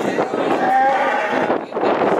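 A cow mooing: one long call lasting about a second and a half.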